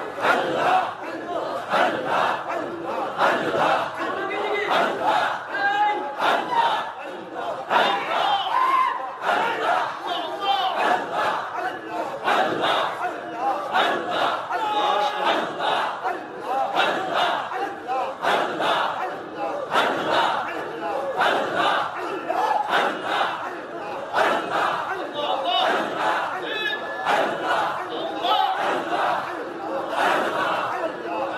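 A large group of men chanting loudly and rhythmically together in Sufi dhikr, many voices overlapping in a steady, pulsing chorus.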